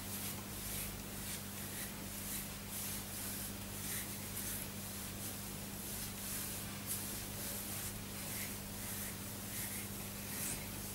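Faint rustling of fingers working oil through thick afro hair, over a steady low hum.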